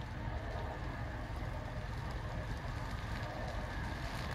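Steady low rumble of a car's engine and road noise heard from inside the cabin, with no distinct events.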